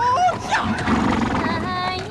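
A woman singing a melody line in Chinese; from about halfway through she holds steady notes.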